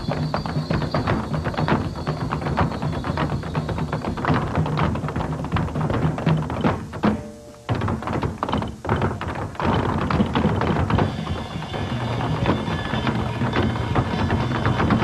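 Tap shoes striking a hard wooden floor in rapid, dense rhythms, several dancers at once, over jazz music. The tapping drops away briefly a little past the middle, then picks up again.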